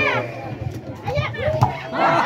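High-pitched voices of players and onlookers calling out over one another at an outdoor football match, with a single sharp knock near the end.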